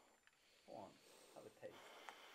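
A man's voice, faint: three short wordless sounds that fall in pitch, over quiet room tone, with a small click at the very end.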